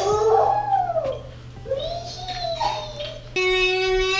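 A toddler's voice making pretend-play sounds: two long calls that slide up and down in pitch, over soft background music. A long steady held note starts about three seconds in.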